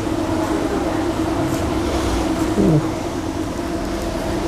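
Steady background hum: one constant tone over a low rumble and hiss, with a brief falling sound about two and a half seconds in.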